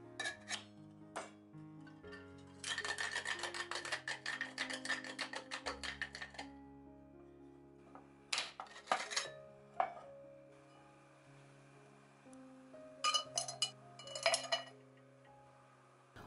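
Ice rattling inside a metal cocktail shaker tin being shaken, a quick run of clicks lasting about four seconds, over soft background music. Several separate metallic clinks and knocks follow later.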